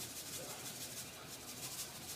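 Faint, even rasping of salt being shaken from a salt dispenser into the pan.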